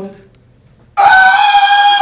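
A man's high falsetto yell into a microphone, starting suddenly about halfway in and held for about a second at a steady pitch before it falls away.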